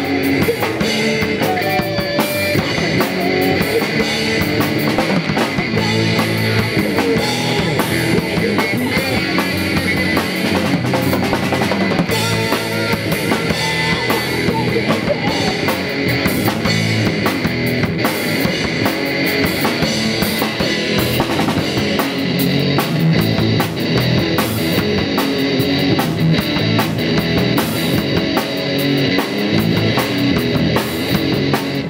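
Live rock band playing: a Tama drum kit driving the beat with bass drum and snare, under electric guitar and bass guitar, continuous throughout.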